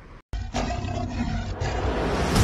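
Lion roar sound effect opening a channel intro, starting suddenly after a brief dead silence, with a deep rumble under it.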